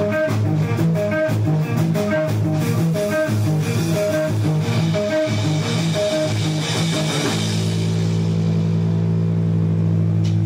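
Electric guitar playing a repeating picked riff over drums, live through an amplifier. About seven seconds in, it settles into a sustained chord left ringing.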